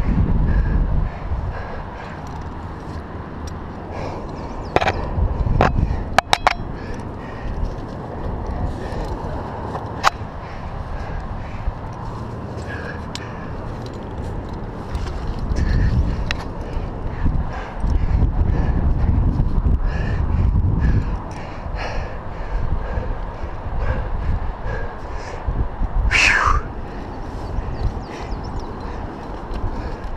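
Rock climbing picked up on a head-mounted camera microphone: an uneven rumble of wind and body movement, with scattered clicks and metallic clinks of climbing gear against the rock, a cluster of them about six seconds in. Near the end there is a short breathy voice sound from the climber.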